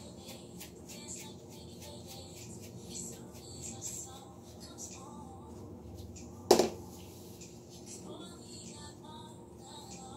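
Quiet handling sounds of bleach being worked into hair with gloved hands: faint rustling and small ticks, with one sharp knock about six and a half seconds in.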